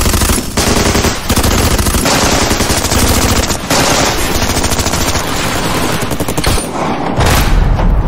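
Rapid gunfire from several handguns and rifles, shots overlapping in long, dense bursts with only brief lulls.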